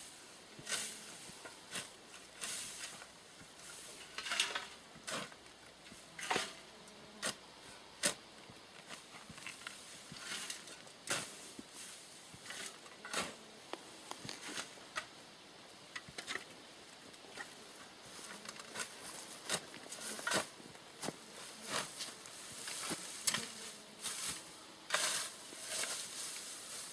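A shovel chopping into grass and soil at a ditch edge: a string of short, sharp cutting strokes, irregular, roughly one a second.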